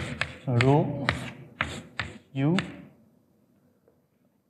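Chalk tapping and scraping on a blackboard in quick strokes as a formula is written, with a man's voice saying a couple of short words; it goes nearly quiet for the last second.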